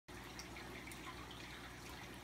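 Faint water trickling and dripping in a home fish tank, most likely from its filter, over a low steady hum.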